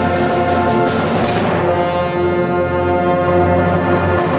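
Concert wind band playing loud sustained chords, with trombones and low brass to the fore; the chord changes about halfway through.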